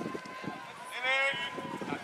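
Footsteps of footballers jogging on grass during a warm-up, with a voice calling out about a second in.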